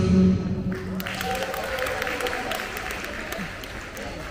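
Dance music stopping about half a second in, followed by audience applause in which single claps stand out.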